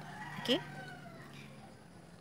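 A voice says a brief 'okay' over a low steady hum, with a faint drawn-out animal call in the background during the first second.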